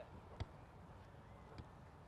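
Near silence with two faint thuds about a second apart: a football being kicked or touched on grass during passing.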